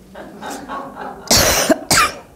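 A woman coughing: two harsh coughs a little over a second in, the first longer and the second short, after some softer throat sounds.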